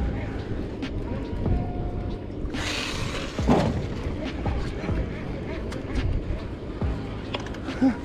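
Uneven low rumble of wind and water around a small boat on open sea, with a brief rushing hiss about two and a half seconds in.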